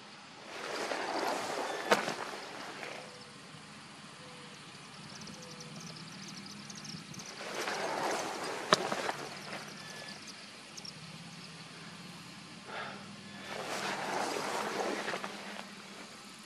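Rustling of grass and handling noise as a person crawls along the ground with a camera: three swells of rustling about two seconds each, with a couple of sharp clicks. A faint steady low hum runs underneath.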